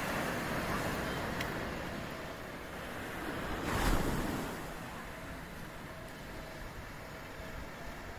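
Small waves breaking and washing up a beach: a steady surf wash that swells to its loudest about four seconds in, then eases off.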